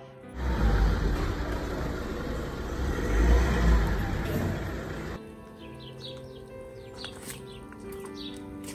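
Loud outdoor street noise with a heavy low rumble, like traffic, for about five seconds, over orchestral background music. It cuts off suddenly, leaving the music with birds chirping.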